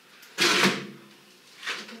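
A short scraping rustle about half a second in, with a fainter one near the end, from shoes and other items being handled at a plastic shoe rack.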